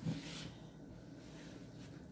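A hand working flour into a soft dough in a plastic mixing bowl: a short rustle of the hand in the flour at the start, then faint sounds of the mixing.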